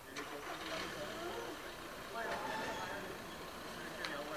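Several people talking in a group, voices overlapping, with a sharp click just after the start.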